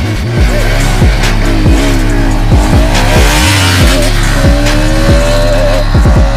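Two single-cylinder sport motorcycles, a Yamaha R15 S and a Bajaj Pulsar RS200, revving and pulling away hard off a drag-race start, their engine note climbing and then holding high near the end. Loud electronic music with a deep, repeating falling bass plays over them.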